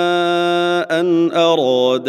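A man reciting the Quran in melodic tajweed chant, holding one long steady note. Just under a second in he breaks off and goes on at a lower, wavering pitch that steps down again.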